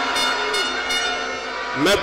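Several steady horn-like tones held together, fading out over the second half, before a man's voice says "mais" near the end.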